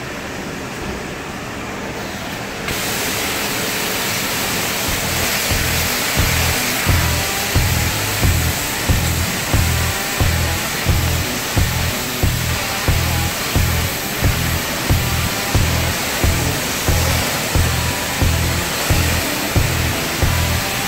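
High-pressure wash lance at a Kärcher self-service car wash spraying water onto a car. It starts up about three seconds in and then runs as a loud, steady hiss. Music with a regular bass beat of about one and a half beats a second plays along with it.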